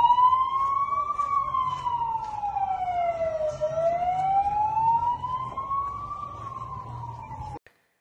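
Emergency vehicle siren on a slow wail, its pitch rising and falling in long sweeps of about five seconds per cycle. A low steady rumble of street noise runs underneath. The siren cuts off suddenly near the end.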